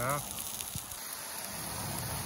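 Burger patties frying in oil in a pan on a portable gas stove: a steady sizzling hiss.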